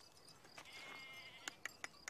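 A faint, distant bleat from a farm animal, about a second long, followed by three light clicks near the end.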